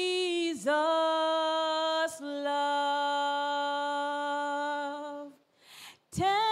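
A woman singing solo and unaccompanied into a microphone, holding three long notes one after another, each slightly lower than the last, with an audible breath near the end.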